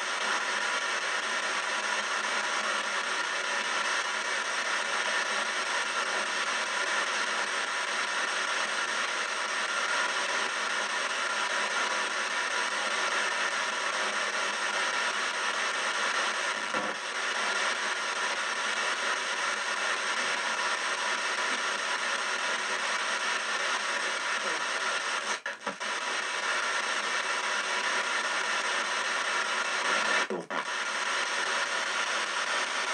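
Ghost box sweeping through radio stations, giving a steady wash of static with brief dropouts about halfway through and again late on.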